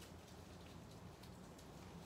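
Near silence: a low room hum with a few faint scratchy ticks as a wooden match is struck against its box and catches.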